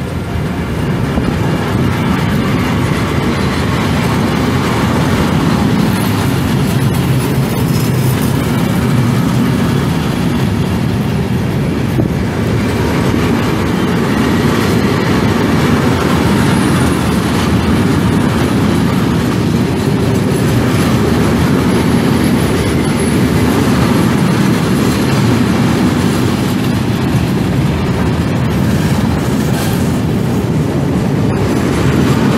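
Freight train of flat wagons loaded with steel sections rolling steadily past at close range, a continuous loud rumble of wheels on rail. A faint high wheel squeal comes in now and then.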